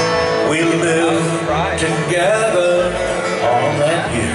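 Live folk song played on two acoustic guitars and an electric guitar, with strummed chords under a melody line that wavers and bends in pitch.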